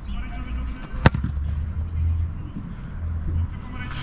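Rugby place kick: a single sharp thud of the boot striking the ball about a second in, over a low rumble.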